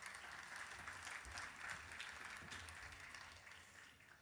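Audience applause with many hands clapping at once. It is faint and dies away near the end.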